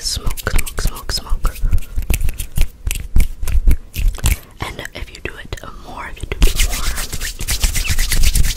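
Fast ASMR hand sounds close to a microphone, with whispering throughout. Quick taps, snaps and flicks come first; from about six and a half seconds in they give way to rapid rubbing of the hands.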